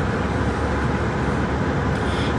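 Steady car-cabin noise heard from inside the car: a low rumble with a faint hiss above it.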